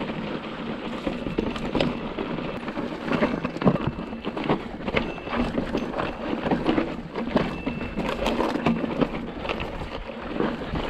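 Mountain bike rolling over a loose, rocky dirt trail: the tyres crunch on stones, and a dense run of irregular clicks and knocks comes from the bike clattering over the rocks.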